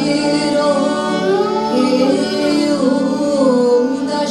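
Live song: a woman's voice singing a gliding, ornamented melody, accompanied by harmonium, violin and keyboard, with steady held low notes under the voice.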